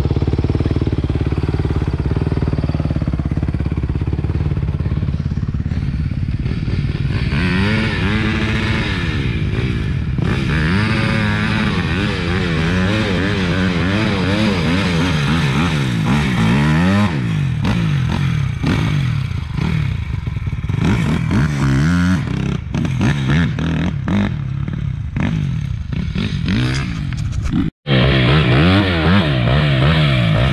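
Off-road dirt bike engines running and revving up and down over and over. The sound cuts out for an instant near the end.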